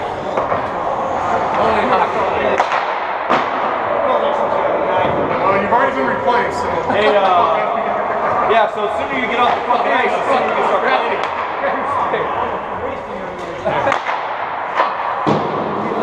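Hockey players' voices talking and laughing over one another, with several sharp knocks scattered through.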